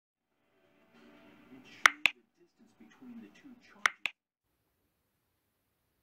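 Two pairs of sharp snaps, the pairs about two seconds apart, over a faint voice.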